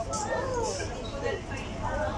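People talking at a table: indistinct conversation over a steady low background rumble.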